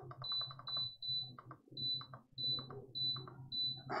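Small home power inverter's alarm beeping: short high-pitched electronic beeps, about two a second at slightly uneven spacing, over a steady low hum with a few faint clicks.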